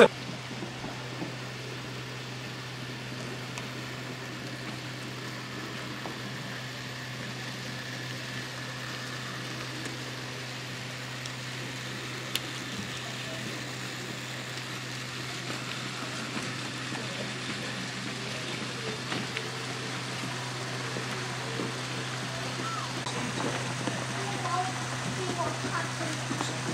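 Background hubbub of an exhibition hall: a steady low hum under faint distant voices that grow a little louder near the end, with a single sharp click about halfway through.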